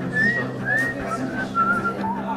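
A short whistled tune of about six sliding notes, dropping lower in the second half, over a steady low hum.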